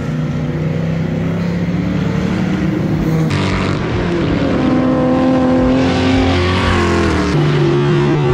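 Drift cars' engines held at high, fairly steady revs as they slide around the track. The engine pitch jumps abruptly about three seconds in and again near the end, where the footage cuts to another car.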